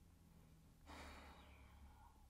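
Near silence: room tone, with a faint exhaled breath about a second in.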